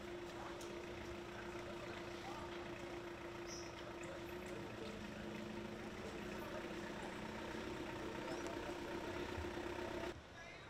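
A vehicle engine idling steadily, a constant low hum, with faint voices in the background.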